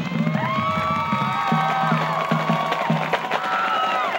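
Marching band playing on the field: brass sustaining a chord that swells in about half a second in and holds, over a steady drum beat.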